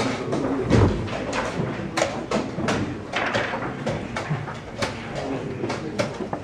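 Rapid knocks of chess pieces being set down on the board and chess clock buttons being pressed during a blitz game, two to three knocks a second, the loudest about a second in.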